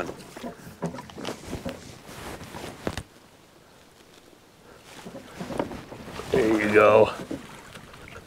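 Short knocks and light splashing over the first three seconds as a landing net is worked through the water beside a canoe to land a hooked fish. About six seconds in, a man's voice gives a brief exclamation.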